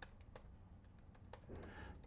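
Faint computer keyboard typing: a handful of separate key clicks.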